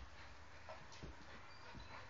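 Wolfdog puppy and adult wolfdog play-wrestling, faint, with a short soft whine about two-thirds of a second in.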